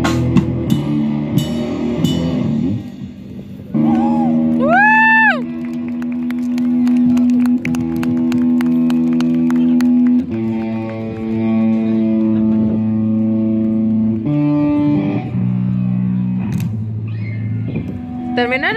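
Live hardcore punk band on electric guitar, bass and drums, the full band playing for the first couple of seconds. Then the guitars hold long ringing notes and chords, with one note bent up and back down about five seconds in and the chord changing every few seconds, as the song winds down.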